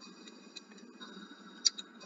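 Two short, sharp clicks close together near the end, the first the louder, over a faint steady hiss.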